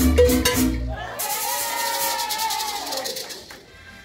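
Live son cubano music: maraca shaking in a fast rhythm over a bass beat, then after about a second the bass drops out, leaving the maraca and a long held vocal note that fade out near the end.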